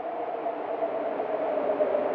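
Wind sound effect: a steady rushing noise with a low hollow tone in it, growing steadily louder.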